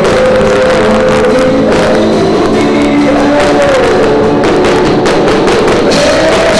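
Live rock band playing loud: a male singer singing into a microphone over electric guitar and a drum kit.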